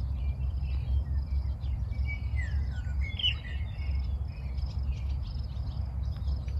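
Wind buffeting the microphone with a steady, uneven low rumble, while small birds chirp and call over it, one louder sliding call about three seconds in.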